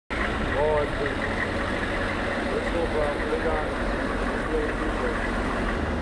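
Military Humvee's diesel engine idling steadily, with faint voices of people in the background.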